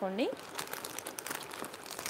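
Plastic jewellery packets crinkling as they are handled, with irregular sharp crackles.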